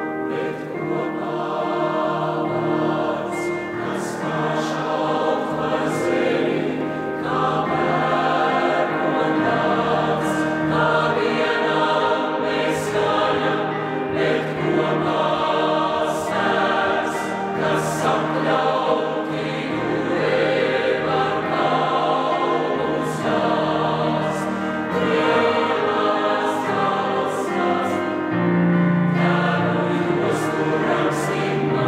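Mixed choir of women's and men's voices singing in full, sustained harmony, the sung consonants coming through as short, sharp hisses.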